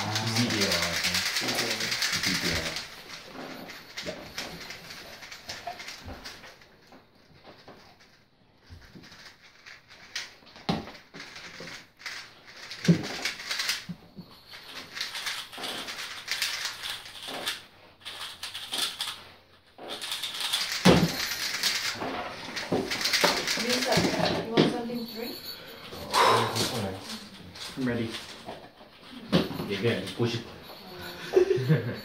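Plastic 3x3 speedcubes being turned rapidly by hand, a stream of quick clicks and clacks, with voices in the room, loudest in the first few seconds and again about two-thirds of the way through.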